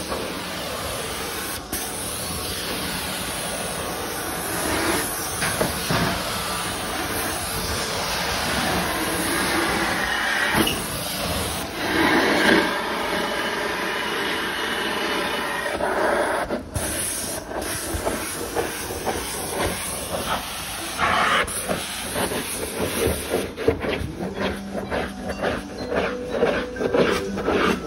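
Hot water extraction stair tool spraying hot cleaning solution into stair carpet and sucking it back up through its vacuum hose: a steady loud hissing rush that swells and shifts as the tool moves over the treads. Near the end it gives way to a run of quick rubbing strokes.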